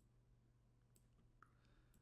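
Near silence: room tone with a low hum and a few faint, sharp clicks about a second in and again near the end.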